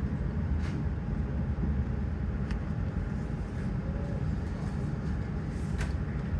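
Steady low rumble of room noise and amplifier hum on a live club stage, with a few faint clicks.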